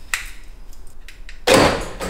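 A couple of faint clicks, then a short loud clunk about one and a half seconds in: a power door lock actuator firing when the remote key fob button is pressed.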